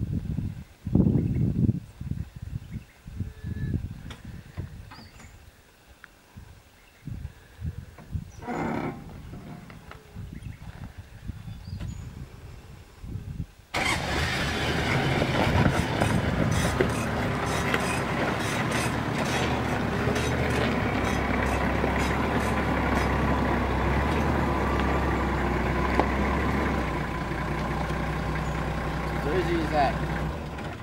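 Manual Toyota LandCruiser 4WD's engine key-started in reverse gear about 14 seconds in, catching straight away and running steadily as the stalled vehicle backs down a steep hill, held on engine compression. Before the start there are only scattered low bumps.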